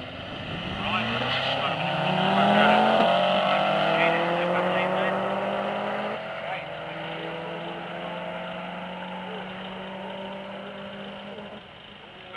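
Two drag-racing cars, one a Subaru Impreza, launching off the start line with engines revving and rising in pitch as they accelerate. The sound is loudest a few seconds in, then fades steadily as the cars run away down the strip.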